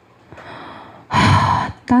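A person's loud, sharp intake of breath close to the microphone, lasting about half a second, after a fainter breath about a second earlier; speech resumes right at the end.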